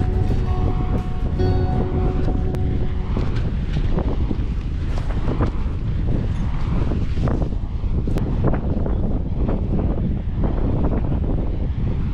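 Strong gusty wind buffeting the microphone: a dense, loud rumble that surges irregularly with each gust. Music with held tones plays over it for the first three seconds or so, then fades out.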